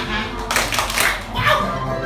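Children clapping and calling out for about a second, starting about half a second in, over music that plays throughout.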